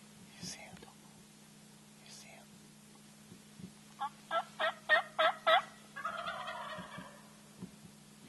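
Six loud hen yelps on a turkey call, about three a second, answered straight away by a wild turkey tom gobbling, a quieter rattling call lasting about a second.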